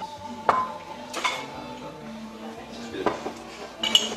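Glass bottles and glasses clinking as a bartender handles them at a bar: four sharp clinks with short ringing, spread unevenly over a few seconds.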